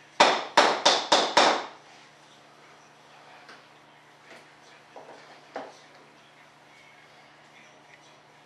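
Hand work at a workbench: five quick, loud strokes in about a second and a half, followed by a few faint clicks and taps.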